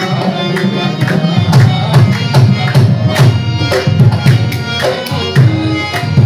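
Qawwali music: tabla playing a steady rhythm of strikes under sustained melodic tones.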